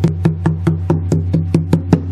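Fingertips tapping quickly and evenly on the body of a Gibson SJ-200 acoustic guitar, about five taps a second, with the body's low resonance ringing steadily underneath. It is a tap test, listening for a buzz or a loose brace inside the body.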